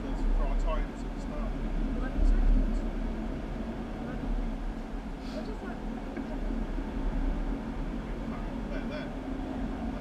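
Go-kart engines running on the track, heard through glass as a steady low drone, with indistinct voices in the background.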